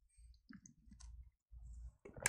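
Near silence with a low hum and a few faint, short clicks about half a second to a second in.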